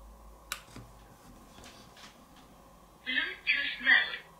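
A single click about half a second in, then near the end the TOPROAD Bluetooth speaker's own small drivers play a short startup prompt in three quick parts, thin and tinny, as the speaker powers on.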